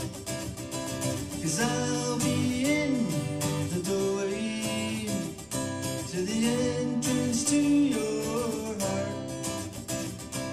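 Acoustic guitar strummed in a steady rhythm through an instrumental passage between verses, with a wordless vocal line gliding over the chords.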